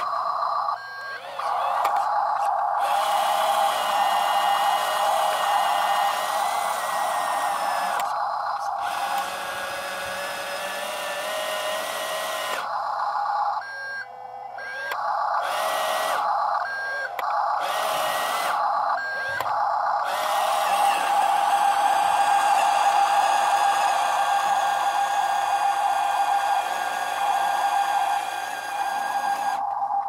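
A WLToys 14600 RC dump truck's electric drive motor and gearbox whining under throttle as it drags its trailer through loose dirt, cutting out briefly several times in the middle as the throttle is let off and reapplied.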